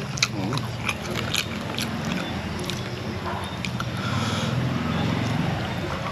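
Close-up eating sounds: wet chewing and lip-smacking, with scattered short mouth clicks, while papaya salad is eaten by hand.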